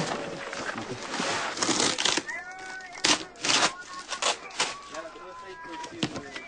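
Voices talking, with several sharp knocks as boxes are handled and loaded.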